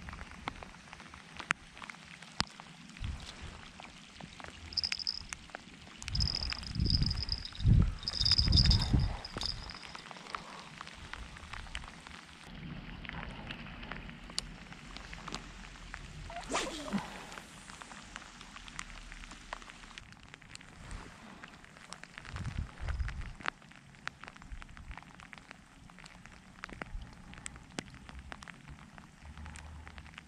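Rain falling on the lake and the camera: a steady patter with many small drop ticks. About six to ten seconds in come several loud low thumps and rumbles, the loudest sound, with a thin high whine over them, and a few more low thumps later on.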